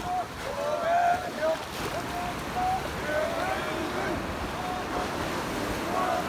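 Small surf washing onto a sand beach, with wind on the microphone, under several men's voices calling out in short repeated shouts while they work the boat.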